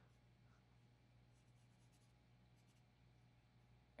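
Near silence over a faint low hum, with faint pencil strokes scratching on drawing paper: a run of short strokes between about one and three seconds in.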